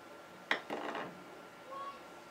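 A sharp metallic click, then a short scratchy rustle as fly-tying tools and materials are handled at the vise; a brief faint squeak comes near the end.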